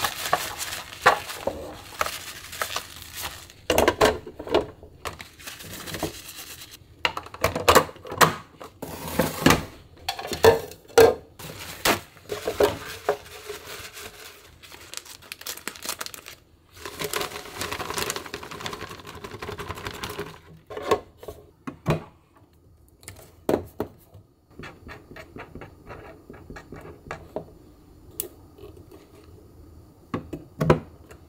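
Clear plastic food-storage containers being wiped with a cloth and handled, with many knocks and clatters of plastic on a countertop. Later a plastic bag of panko breadcrumbs rustles and the crumbs are poured into a plastic canister, followed by lighter clicks of its lid near the end.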